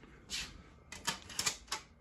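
A quick run of light clicks and taps from handling a DVD disc and its plastic case: one early, then a cluster of about five in the second half.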